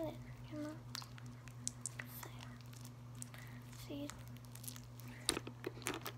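Hands kneading and squeezing a lump of stiff slime worked with lotion, giving scattered small sticky clicks and pops that come thicker near the end as it is pressed on the table.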